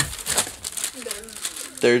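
Packing paper and a clear plastic bag crinkling and rustling as hands pull them around a boxed replacement blinker lamp, with irregular crackles and small snaps.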